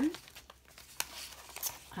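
Paper rustling and crinkling as card tags are handled and slid in a kraft-paper envelope, with one sharp click about halfway through.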